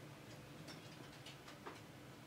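Faint, irregular light clicks and taps as a screwdriver and a smartphone's plastic housing are handled, over a faint steady hum.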